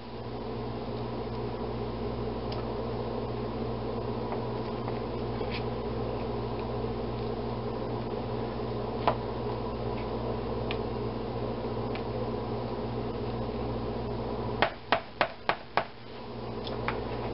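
A steady, even hum runs throughout. Near the end a spoon is tapped against the whipped-cream bowl about five times in quick succession.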